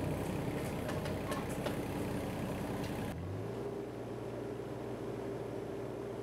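A steady mechanical hum with an engine-like drone. About three seconds in it cuts abruptly to a different, smoother steady hum.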